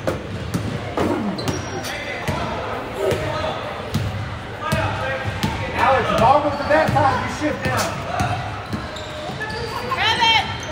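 A basketball dribbled on a hardwood gym floor, a run of sharp bounces, with voices calling out around the court, loudest in the middle of the stretch.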